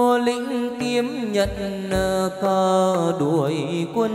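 Chầu văn ritual music: a singer holding long, wavering notes without words, over instrumental accompaniment, with two low beats near the middle.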